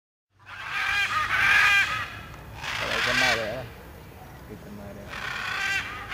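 Macaws calling in flight: loud, harsh squawks in three bouts, starting about half a second in, again around three seconds, and near the end.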